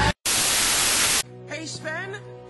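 Loud, even TV static hiss lasting about a second, cut off abruptly.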